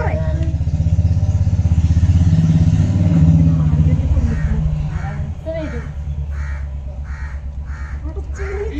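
A vehicle engine idling close by, a low, even pulse that is loudest in the first few seconds and eases off after.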